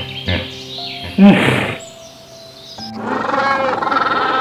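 A hippopotamus gives a few short, deep grunts over background music, the loudest about a second in. Near the end, a penguin colony's many overlapping calls abruptly take over.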